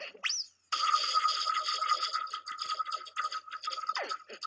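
Cartoon sound effect of a ship sinking: a quick rising whistle, then about three seconds of steady bubbling noise with a held tone in it.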